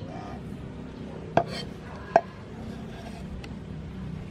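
Two sharp knocks of a steel cleaver striking a wooden chopping block, less than a second apart, as minced garlic is scraped up on the blade.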